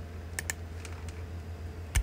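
A few sharp clicks on a computer, two close together about half a second in and two fainter ones around a second in, over a steady low electrical hum. A short louder sound comes at the very end.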